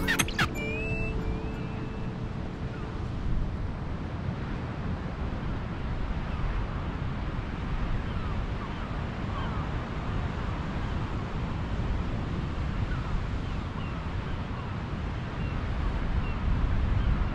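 Wind on the microphone on an open clifftop: a steady low rumble with a hiss, with a few faint short chirps scattered through it. The held notes of a piece of music fade out in the first couple of seconds.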